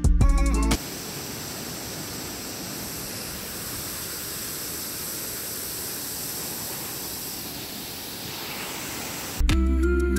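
Steady rush of a waterfall cascading down a rock face, an even noise with no let-up. Background music with plucked guitar plays briefly at the start and comes back near the end.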